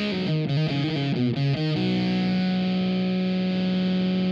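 Electric guitar played through a Boss FZ-2 Hyper Fuzz pedal. For about the first two seconds it plays a quick riff of short fuzzed notes, then lets the last one ring on, sustaining steadily.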